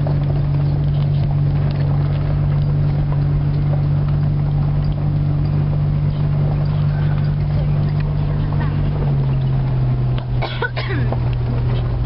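Vehicle engine running steadily, heard from inside the cab while driving slowly over a dirt farm track. Its note drops a little about nine seconds in.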